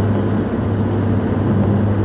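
Steady road and engine noise of a car driving at highway speed, heard inside the cabin as a constant low drone.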